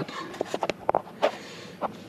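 A handful of light, sharp clicks and knocks, about six over two seconds, from parts or gear being handled.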